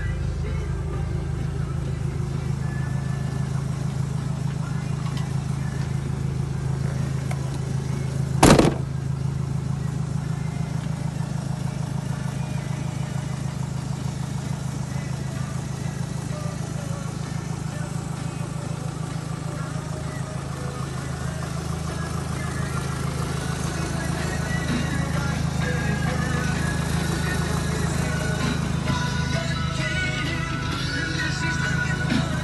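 A 2005 Hyundai Terracan's 2.9-litre four-cylinder CRDi diesel engine idling steadily, with one sharp thump about eight and a half seconds in. Music plays over it.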